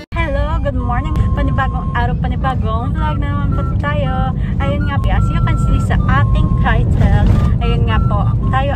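Steady low rumble of road and engine noise inside a moving car's cabin, under a person's voice talking.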